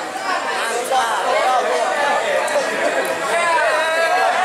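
Crowd chatter: many voices talking at once, overlapping and indistinct, with no drumming.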